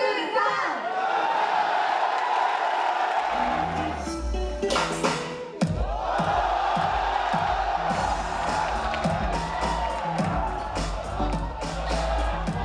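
An audience cheering and laughing, a dense crowd noise with a short lull just before the middle. Pop music with a bass beat runs under it from about three seconds in.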